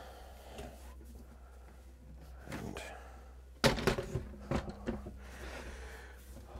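A freestanding folding table with metal legs being handled, legs locked out and the table set on its feet on the floor: quiet rustling and small knocks, then one sharp thunk about three and a half seconds in, followed by a few lighter knocks as it settles.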